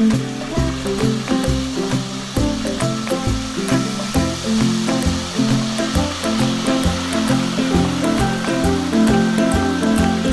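Background music over the sizzling hiss of pork belly deep-frying in oil, which foams up hard with ice added to the pot. The sizzle starts abruptly at the beginning.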